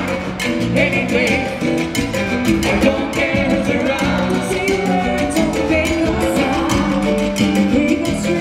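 Live salsa band playing, with a steady percussion rhythm from timbales and drum kit under saxophone and other held instrument notes.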